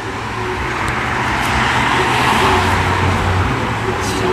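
A car passing by on the street, its road noise swelling to a peak about halfway through and then easing off.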